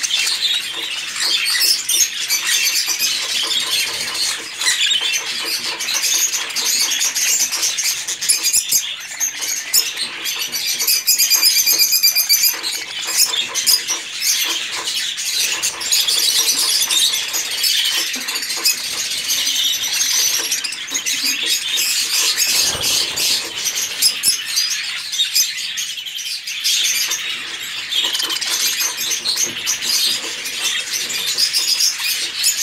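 A flock of caged budgerigars chattering: a dense, continuous mix of many chirps and warbles at once, with wings flapping as birds flutter around the cage.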